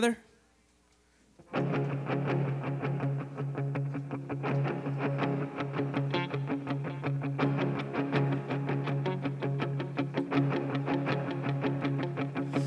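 Electric guitar through effects playing a steady, evenly picked pattern, starting about a second and a half in after a moment of near silence.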